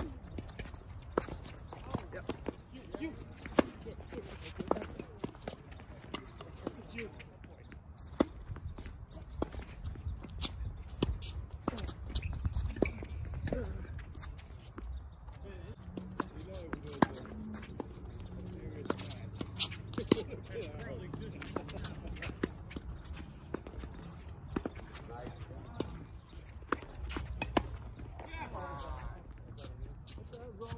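Tennis rackets striking the ball and the ball bouncing on a hard court: sharp pops scattered through, every second or few. Voices talk in the background in the middle stretch.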